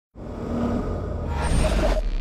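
Television intro sound effect: a deep rumble with a rushing noise that swells louder and brighter about a second and a half in.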